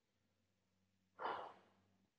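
A single short breathy exhale like a sigh, about a second in, from one of the two people on the call; otherwise near silence with a faint low hum.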